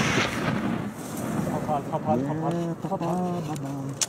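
The rolling echo of a rifle shot dying away off the mountainside in the first second, then people's voices.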